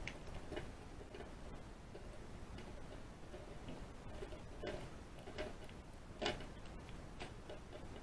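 A lock pick raking and working the pins of a lock under a tension wrench: faint, irregular small metal clicks and scrapes, with a sharper click about six seconds in.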